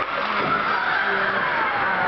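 Hockey skate blades scraping and carving on the ice during play, with a few squealing glides that fall in pitch, over the steady din of an ice rink.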